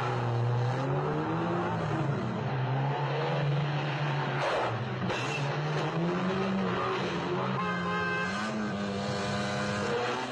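Car engines revving hard, their pitch climbing and dropping again and again as the cars accelerate and shift gear, with a brief screech of tyres about halfway through.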